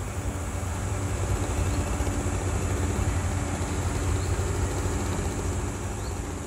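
A motor vehicle engine idling: a steady, even low hum.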